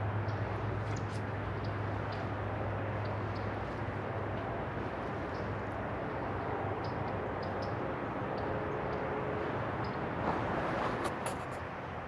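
Steady outdoor background rumble with a low hum that fades about four seconds in, and faint scattered ticks from footsteps on grass.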